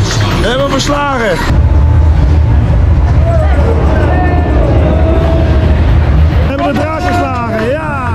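Spinning roller coaster car rolling along its steel track: a loud low rumble starting about a second and a half in and fading near the end. Voices are heard at the start and again near the end.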